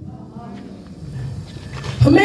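A woman's quiet voice through a hand-held microphone and hall PA, with a low steady hum underneath; it grows louder near the end.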